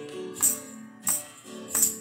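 Acoustic guitar strumming chords in a worship song, with a tambourine struck on the beat about every two-thirds of a second.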